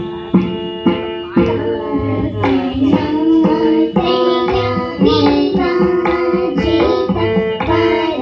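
Live Carnatic-style devotional music: hand strokes on a two-headed barrel drum, then about a second and a half in a group of girls start singing a melody together over the drum.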